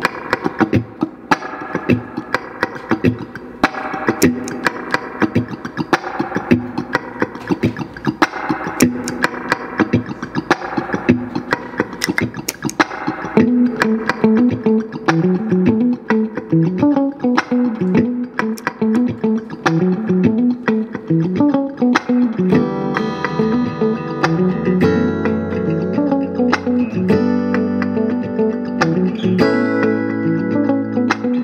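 1976 Fender Stratocaster electric guitar played clean through an amp in a funky style: fast rhythmic strumming with choppy, scratchy muted strokes. About halfway through it moves to a single-note riff, and near the end to ringing chords.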